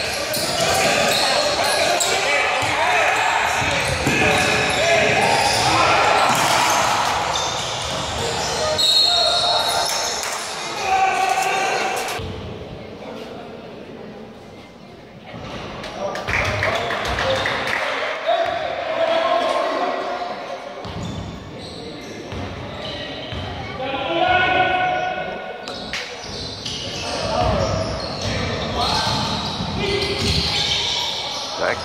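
Basketball game sounds in a large gym: a basketball bouncing on the court amid shouting voices from players and spectators, all echoing in the hall.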